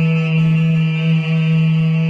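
Lao khaen, a bamboo free-reed mouth organ, sounding a steady held chord: a strong low drone note with several higher notes sustained above it.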